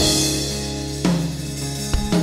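Pearl drum kit played: a crash-cymbal and bass-drum hit at the start that rings out, then further hits about a second in and near the end, over held notes from the band.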